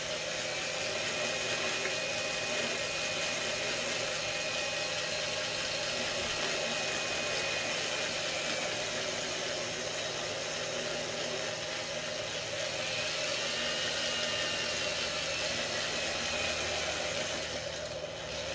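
Electric drill running at a steady speed, spinning a power-tool motor armature while a file edge is held against its badly worn copper commutator to re-true the surface, with a thin high whine that wavers slowly in pitch.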